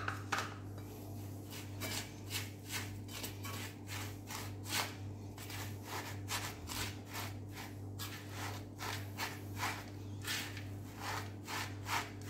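A silicone spatula stirring and scraping toasted kunafa shreds and nuts in a pan, a rhythmic scratchy rustle of about two to three strokes a second. A steady low hum runs underneath.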